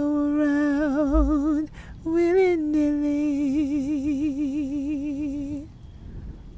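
A single voice humming a slow melody a cappella, holding long notes with wide vibrato, in two phrases with a short break about two seconds in; the second phrase fades and stops shortly before the end.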